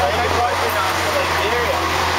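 Indistinct voices of people talking over a steady low engine hum and city street traffic noise.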